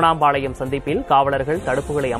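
Men's raised voices shouting loudly, one strong voice starting abruptly and carrying through.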